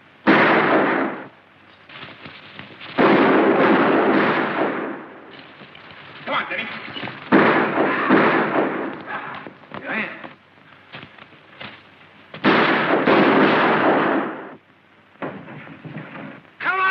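Gunfire: four loud shots, each with a long echoing tail, come near the start, about three seconds in, about seven seconds in and about twelve and a half seconds in. Fainter pops and a couple of brief shouts fall between them.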